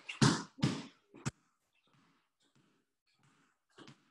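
Two sharp, breathy exhalations from a person starting jump lunges, a single thud about a second in, then faint, short breaths.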